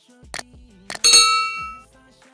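Subscribe-button animation sound effects: two short mouse-click sounds about half a second apart, then a bright bell ding that rings out and fades within about a second. Faint background music runs underneath.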